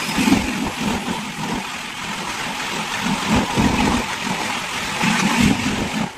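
A moving train, heard as loud, steady noise from the wheels and the rushing air, with low pulses through it, while another train's coaches pass close alongside.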